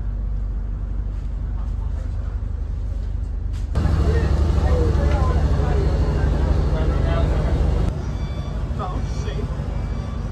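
Steady low rumble of a boat's engine, with people talking in the background; it grows louder, with more chatter, about four seconds in and drops back near the end.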